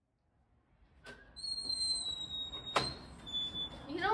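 A door opening: a click, then a thin, high squeak held for about a second and a half, then a sharp clack, with a brief second squeak after it.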